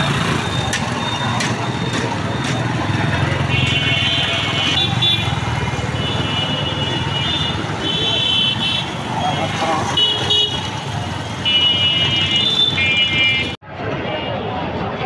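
Busy street traffic: engines running, with repeated short honks from vehicle horns and voices in the background. The sound drops out briefly near the end.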